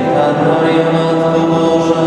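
Church congregation singing in unison, slow and steady with long held notes.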